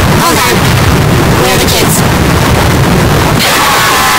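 Heavily distorted, pitch-warbled commercial soundtrack: short garbled voice fragments buried in loud, saturated noise. Near the end it changes to a steadier sound with slowly falling tones.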